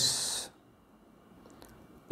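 A man's voice trailing off the hissed 's' at the end of a spoken word, about half a second long, then quiet room tone with a couple of faint ticks.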